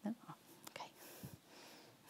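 A woman's soft spoken "No? Okay." at the start, then quiet room tone with a few faint soft noises.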